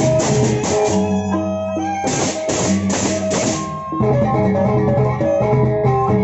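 Lombok gendang beleq gamelan playing: a row of small bossed kettle gongs struck with mallets in fast, ringing, interlocking patterns over steady low gong tones. In the middle come four loud accented strokes, evenly spaced just under half a second apart.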